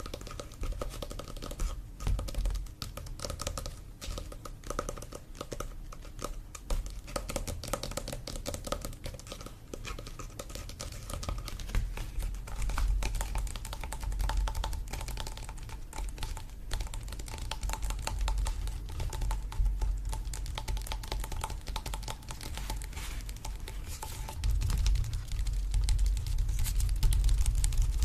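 Fingertips and fingernails tapping rapidly on a stretched canvas print held close to the microphone: a dense, continuous run of light taps, growing louder and heavier near the end.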